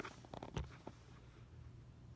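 A few short metallic clicks and a soft thump in the first second as slotted metal masses are hung on a spring's hook hanger, then only a faint steady hum.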